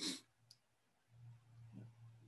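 Faint computer clicks, a short sharp one at the start and a smaller one about half a second in. A faint low hum follows from about a second in.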